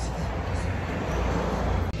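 Street traffic noise: a steady low rumble with a hiss that swells slightly through the middle, as of a vehicle passing.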